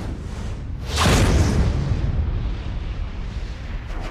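Cinematic boom sound effect for an animated title logo: a swell that breaks into a loud, deep hit about a second in, followed by a low rumble that slowly fades.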